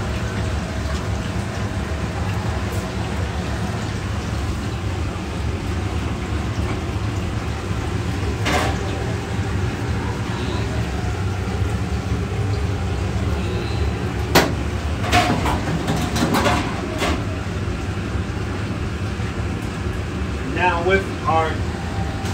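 A steady low hum like a running ventilation fan, with a couple of sharp clicks and brief snatches of voices.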